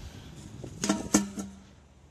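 Two quick knocks about a third of a second apart, each followed by a brief low ring, as the small fire setup is handled.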